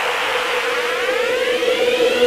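Electronic riser sound effect: a steady held tone with a sweep that climbs in pitch from about half a second in, building up toward a drop.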